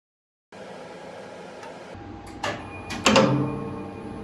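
Elevator electromagnetic drum brake clacking: a couple of light metal clicks, then a loud clack about three seconds in that rings on briefly, over a steady hum.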